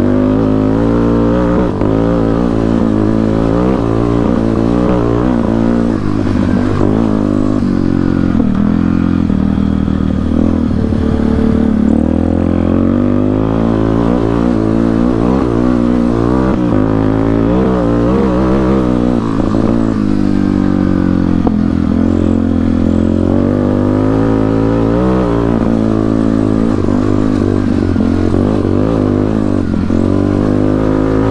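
Yamaha Warrior 350 quad's single-cylinder four-stroke engine running through a custom Rossier exhaust, loud and steady, its pitch rising and falling again and again as the rider throttles up and eases off on a dirt trail.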